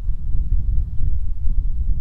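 Wind buffeting the microphone: a loud, low rumble that rises and falls unevenly.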